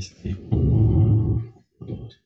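A person's voice making a low, drawn-out sound about a second long, such as a hesitation, after a brief sound at the start.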